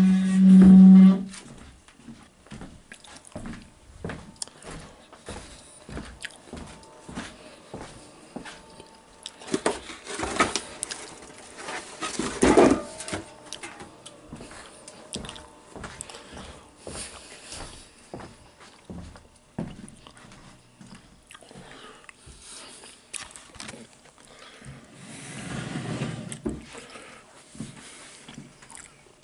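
Close-miked chewing of bacon: irregular crunches, mouth clicks and smacks, busiest about ten to thirteen seconds in. A short steady hum opens it in the first second.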